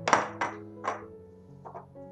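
Background music with held notes, over a ceramic bowl being set down and moved on a granite countertop: one loud thunk right at the start, then three softer knocks.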